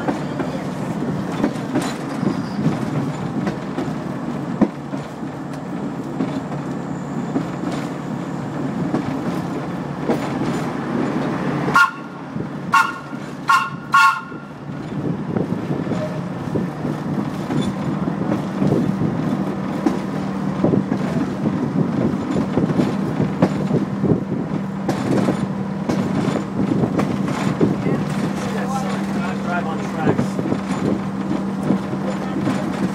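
Railcar rolling slowly along the track, heard from inside the cab as a steady motor hum under the running noise. About twelve seconds in, its horn gives four short toots.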